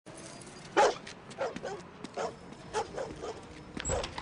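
A dog barking, about seven short barks spread unevenly, the loudest about a second in.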